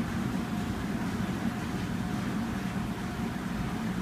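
Steady low rumbling background noise with a faint hum over it and no distinct events.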